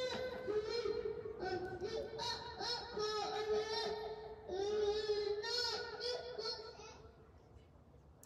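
A two-year-old child's voice amplified through a karaoke machine: long, high, drawn-out notes that bend up and down, a noise that dies away near the end.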